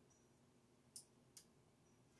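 Near silence with two faint clicks about a second in, a small switch on a power cord being flicked.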